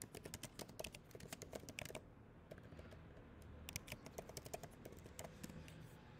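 Faint typing on a computer keyboard: quick runs of key clicks through the first two seconds, a pause, then another run around four seconds in.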